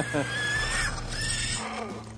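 A man laughing and exclaiming in excitement, with a steady high-pitched whine under it for about the first second.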